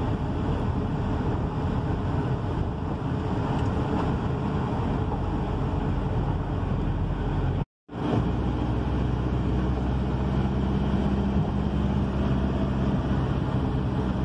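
Steady engine and road noise of a car heard from inside the cabin while driving. The sound cuts out completely for a moment about eight seconds in. After that a steady low engine hum stands out more.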